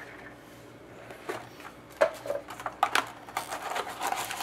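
Cardboard trading card hobby box being opened by hand, its lid and cardboard insert scraping and clicking in a few short sharp sounds that start about a second in.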